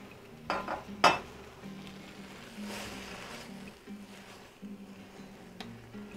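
Two clinks of a utensil against a stainless steel cooking pot, about half a second and one second in, the second louder, followed by the faint sizzle of beef and vegetables frying in the pot.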